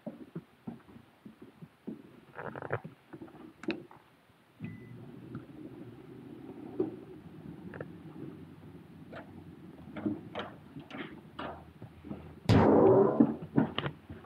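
Footsteps and small handling clicks in an indoor corridor, with a steady low hum beginning about four and a half seconds in. A loud burst of noise lasting under a second comes near the end, as the door of the private booth is opened.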